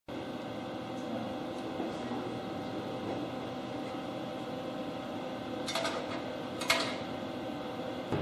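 Steady hum of running radio-repeater equipment and its cooling fans, with several fixed tones, and a few brief clicks and rustles of handling about six to seven seconds in.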